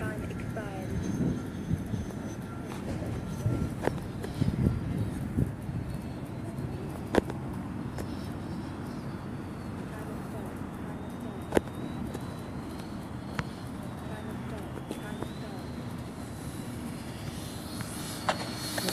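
Faint, wavering whine of an RC jet's electric ducted fan at low power over a steady low rumble, with a few sharp clicks.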